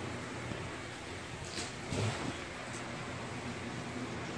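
Steady low room hum, with a brief louder noise about two seconds in.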